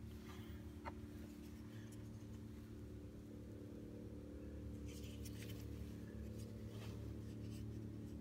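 Quiet room tone with a steady low hum, and a few faint clicks and rustles of a small plastic model car being handled.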